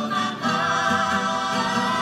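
A rondalla's youth choir singing in unison with a female lead voice, over acoustic guitars, with sustained notes held with vibrato.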